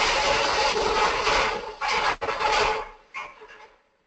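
Elevator car run at full speed down the shaft into the pit buffer during a five-year buffer test, its safeties jumpered out. It makes a loud rushing, rattling crash with a steady whine in it and a sharp knock about two seconds in, then dies away near the end. It sounds really bad.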